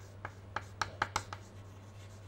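Chalk on a chalkboard, writing a word: a string of about six short, sharp ticks and scratches in the first second and a half, over a faint steady low hum.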